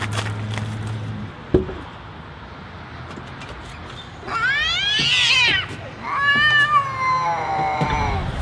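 Cat meowing twice: a long meow that rises and falls about four seconds in, then a drawn-out meow that slowly falls near the end. A low hum sounds in the first second, with a single knock shortly after.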